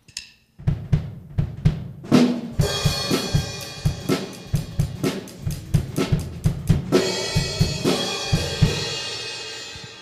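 An acoustic drum kit plays a rock beat on bass drum, snare and cymbals. It starts about half a second in and the cymbals join about two seconds later. The strokes stop a little before the end, leaving the cymbals ringing out.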